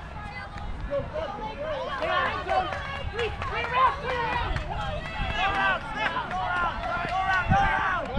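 Several voices of players on the sideline overlap, calling out and talking to each other throughout.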